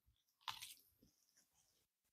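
Near silence with faint chewing of a lettuce wrap of grilled pork belly, and one soft click about half a second in.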